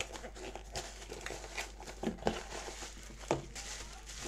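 A small cardboard parcel is opened by hand and a bubble-wrapped item is pulled out. The packaging makes irregular crinkling and rustling, with a few sharper clicks.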